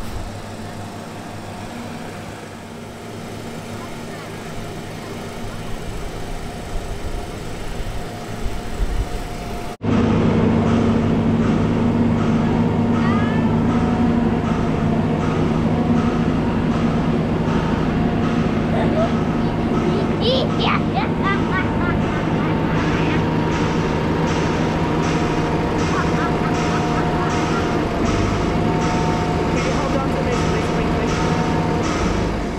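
Hydraulic boat trailer's engine and hydraulics running steadily while hauling a sailing catamaran up the ramp out of the water: a continuous machine drone with a steady whine. It becomes much louder about ten seconds in.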